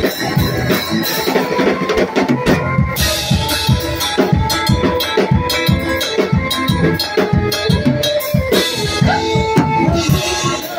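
Live band playing on stage: a drum kit beating a steady rhythm under electric guitars. A voice sings a long "oh" near the end.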